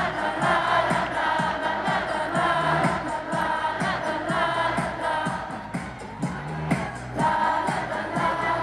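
K-pop girl group song played live over a concert PA: female voices singing into microphones over a pop backing track with a steady beat.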